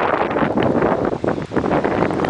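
Wind buffeting the camera's microphone, a loud gusty rush of noise.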